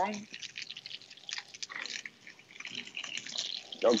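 Chicken sautéing in a hot frying pan: a steady, irregular crackling sizzle.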